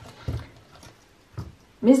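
A few soft thumps and taps as hands set a deck of oracle cards down and press on the cards on a cloth-covered table.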